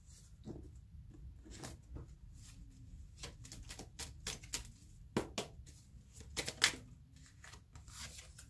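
A deck of tarot cards shuffled by hand: a run of irregular soft snaps and riffles, loudest a little after five seconds in and again at about six and a half seconds.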